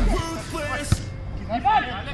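Background music ending in the first moment, then the live sound of the game: men's voices calling out across the pitch, with one sharp knock near the one-second mark.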